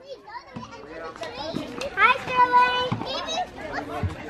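Young children's voices at play outdoors: high-pitched calls and chatter, with one longer held call about two seconds in.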